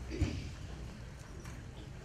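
Footsteps of several people on a raised stage platform, with one dull thump about a quarter second in.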